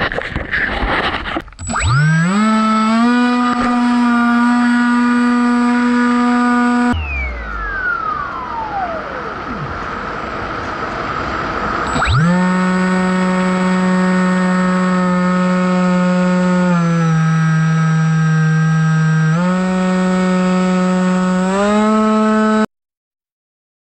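Electric motor and propeller of a Bixler RC foam plane, heard from on board: it spins up about two seconds in to a steady high drone and cuts off around seven seconds, followed by a falling whistle. It starts again around twelve seconds, drops in pitch for a couple of seconds as the throttle eases, then speeds back up near the end.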